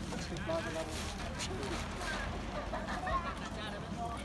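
Faint voices of several people talking at a distance over a steady low outdoor rumble.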